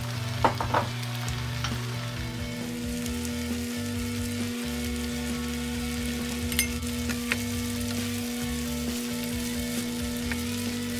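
Chow mein noodles frying and sizzling in a non-stick pan while being stirred with a wooden spatula, with a few sharp clicks of the spatula on the pan, the loudest pair about half a second in and two more around six and seven seconds in. A steady low hum runs underneath.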